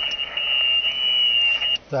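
A steady high-pitched tone over hiss from an amateur radio transceiver's speaker, cutting off suddenly near the end.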